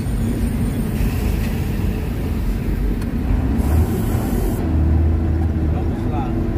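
Steady engine and road rumble inside the cab of a large vehicle driving in traffic, with the low engine drone swelling about five seconds in.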